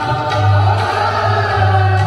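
Music with a group of voices singing together in held notes, over a low bass that pulses on and off.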